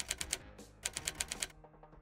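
Typing sound effect: two short runs of evenly spaced key clicks, about ten a second, over faint background music.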